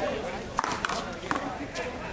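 About four sharp knocks of a paddleball being struck and bouncing off paddle, wall and court, a few tenths of a second apart, over background voices.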